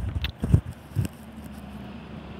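Handling noise on an earphone cord's inline microphone: three dull bumps in the first second, then steady background hiss.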